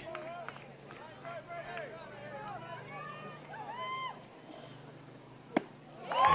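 Quiet ballpark ambience: scattered distant voices calling out over a steady low hum. Near the end comes one sharp pop, a pitch smacking into the catcher's mitt for a strike.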